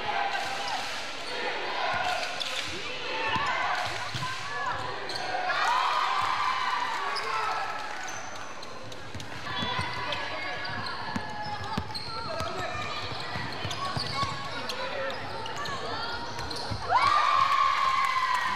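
Basketball dribbled and bounced on a gym floor amid players' voices calling out, in a reverberant sports hall; the voices get louder about a second before the end.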